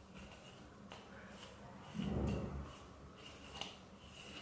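Plastic wide-tooth comb drawn down through wet, conditioner-coated curly hair to detangle it: faint, short combing strokes, with a brief low rumble about halfway through.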